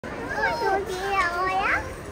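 A young child's high voice talking, with the pitch gliding sharply upward near the end.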